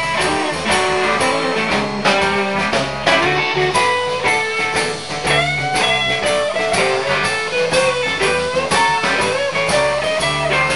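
Live blues shuffle: an electric guitar solo with bent notes over a steady shuffle beat from drums and bass.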